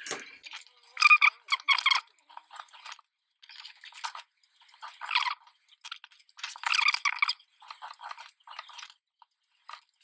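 Craft knife drawn along a clear acrylic square rule, cutting diagonally through patterned paper to miter a frame's corners: a series of short scraping strokes, the longest about a second.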